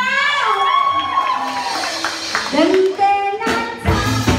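A drawn-out voice with its pitch gliding up and down over light crowd clapping, then loud live band music starts near the end.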